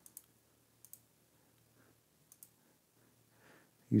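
A few faint computer mouse clicks: two quick pairs within the first second and another click about two and a half seconds in, over quiet room tone.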